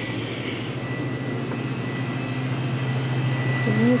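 Steady low mechanical hum of a convenience store's air conditioning and refrigerated drink coolers, with a thin steady high tone over it.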